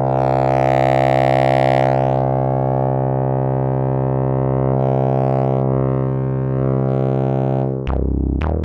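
Sustained synthesizer drone through a Rossum Evolution transistor-ladder low-pass filter, held at one pitch while a triangle wave frequency-modulates its Species overdrive. The tone swells brighter and grittier in slow waves, brightest in the first two seconds: a nice filthy, distorted sound.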